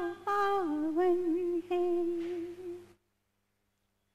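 A woman's voice humming a slow devotional melody in long held notes. It stops abruptly about three seconds in and leaves dead silence.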